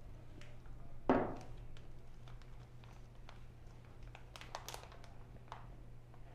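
Faint handling sounds of plastic fish bags and a small cup at an aquarium's rim: light crinkles and taps, with one brief louder sound about a second in, over a steady low hum.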